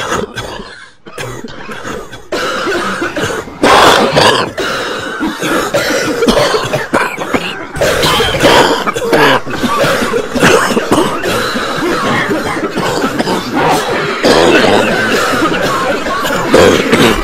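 A person coughing over and over in loud, irregular bursts, starting suddenly.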